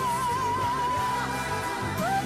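A female singer holds one long high note with a steady vibrato over orchestral accompaniment.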